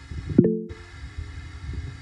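Low rumbling background noise on an open call line, with a sharp knock and a brief cluster of low tones about half a second in, followed by a momentary dropout of the audio.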